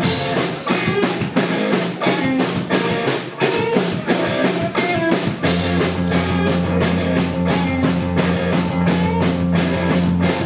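Garage punk band playing live: drum kit keeping a fast, even beat with distorted electric guitar over it. About halfway through, a loud sustained low note comes in under the band.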